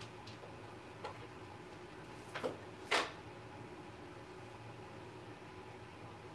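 A faint click about a second in, then two short scraping strikes about half a second apart, the second louder: a light being struck to light a stick of incense. A low steady room hum runs underneath.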